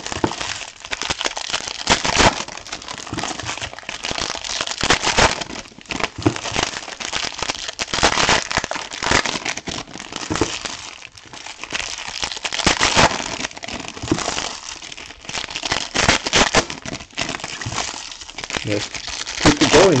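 Silver foil wrappers of trading-card packs crinkling as hands open the packs and handle the cards, in a run of irregular crackly rustles.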